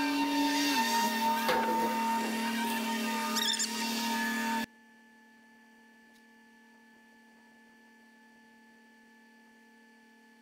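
Engine and hydraulics of a grapple machine running, the pitch climbing and falling back as the boom works, with a short squeal about three and a half seconds in. The sound cuts off suddenly a little before halfway, leaving only a faint steady hum.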